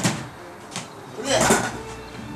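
Folding multi-position aluminium ladder knocking and clattering as it is handled and set down on a wooden porch floor: a sharp knock at the start and a louder clatter about one and a half seconds in.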